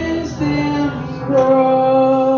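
A woman singing a worship song into a microphone with keyboard accompaniment. She moves through a few short notes, then holds one long note from a little past halfway.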